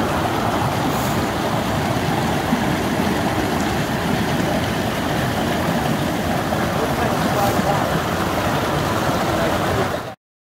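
Shallow creek water rushing over rocks and spilling down a small cascade, a loud, steady rush.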